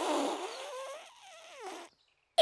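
Breathy air blown through a hollow toy dinosaur tail, the tail's buzzing note tailing off into a hiss, then a short wavering giggle that falls in pitch.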